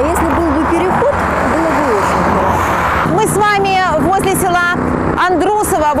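Traffic passing on a busy road, a steady noise of cars heaviest in the first half, under people talking. From about halfway a clearer voice is heard over it.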